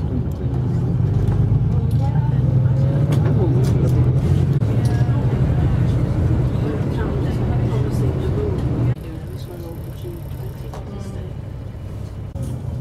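Tour coach driving through city traffic, heard from inside the cabin: a loud, steady low engine and road rumble with faint voices in it. About nine seconds in it drops abruptly to a quieter rumble.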